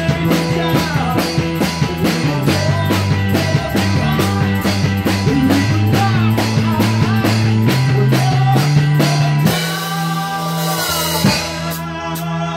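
Live rock band playing loud in a rehearsal room: drum kit keeping a steady beat with electric bass and guitar. Near the end the beat breaks into a cymbal wash under a held, bending guitar note before the drums come back in.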